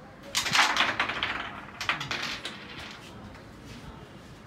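Carrom striker shot into the wooden carrom men: a dense clatter of pieces clacking against each other and the board's wooden frame, followed by a second, shorter burst of clacks a little over a second later.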